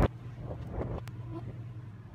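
A gymnast's hands and feet thudding onto a foam gym mat: one heavy thump, then a couple of lighter thumps and a click about a second in, over a steady low hum.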